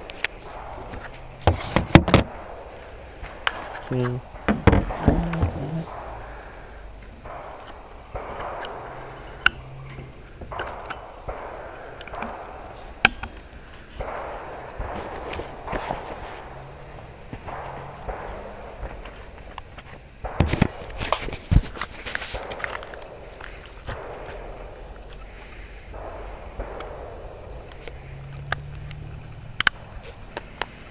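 Footsteps through dry leaf litter with handling bumps and knocks on the camera, including sharp knocks about two seconds in and again around twenty to twenty-two seconds in.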